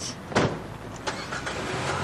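A car door shuts with a single loud thump, then the car's engine starts and runs with a steady low rumble.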